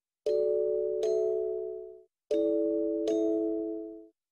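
Background music: four struck chords in two pairs, each starting sharply and ringing out as it fades, with short silent breaks between the pairs.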